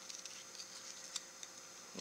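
Small scissors snipping around a small piece of black cardstock to round its edges: a few faint, scattered snips.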